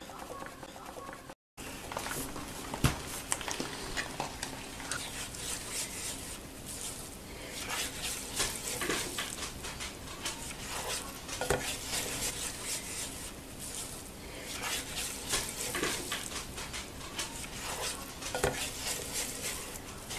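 A spatula stirring and scraping crumbled sausage and flour in a hot electric skillet, with irregular scrapes and taps against the pan over a light sizzle. There is a sharp knock about three seconds in.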